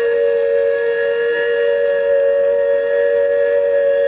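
Steady electronic drone of several held tones from the show's soundtrack.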